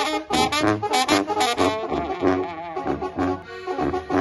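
Mexican banda playing live: a brass section carries the melody over a pulsing tuba bass line and drums, the instrumental lead-in before the vocals.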